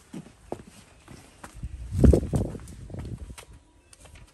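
Footsteps and light knocks as a child moves about a paved patio among wicker garden chairs, with a louder low thump and rustle about two seconds in.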